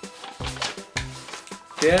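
A sheet of paper being unfolded, with short rustles and crackles, over background music with low sustained notes.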